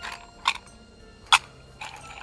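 Garlic almonds in a small tin being picked out and eaten: four sharp clicks and crunches, the loudest about half a second and just over a second in, over faint background music.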